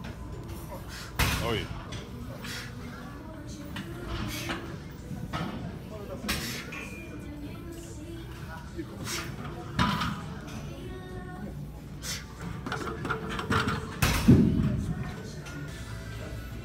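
Gym ambience: background music and voices, with several sharp clanks of weights during a bench-press set.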